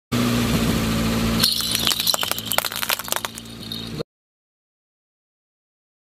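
A steady low hum, then a dense run of sharp cracks and clinks of hard plastic breaking under a car tyre, which stops abruptly about four seconds in.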